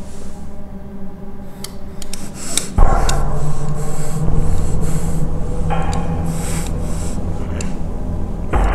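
A low droning tone that swells suddenly and loudly about three seconds in, under repeated sniffing through the nose and a fingertip rubbing on a glass mirror.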